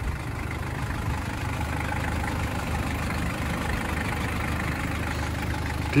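Toyota Land Cruiser Prado's diesel engine with a mechanical injection pump idling steadily with a low, even rumble.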